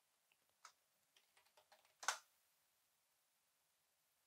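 Faint computer keyboard typing: a few light key clicks in the first two seconds, then one louder keystroke about two seconds in.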